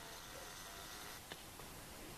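Quiet room tone: a faint steady hiss in a small room, with one small click a little past halfway.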